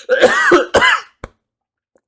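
A man coughing and clearing his throat in the middle of a fit of laughter, about a second of it, then stopping.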